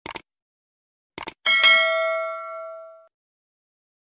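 Subscribe-button sound effect: a couple of quick mouse clicks, two more about a second in, then a bright bell ding that rings out and fades over about a second and a half.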